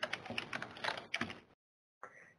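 Computer keyboard typing, a quick run of key clicks lasting about a second and a half and then stopping, stray typing leaking into the webcast's call audio.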